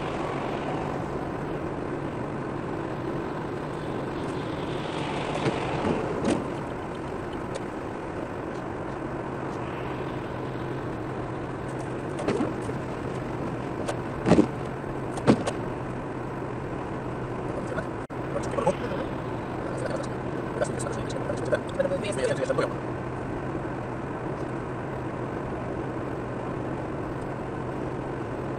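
Steady road noise of a car cruising at motorway speed, heard from inside the cabin: tyre hiss on wet asphalt over a low engine hum, with a few brief clicks about halfway through.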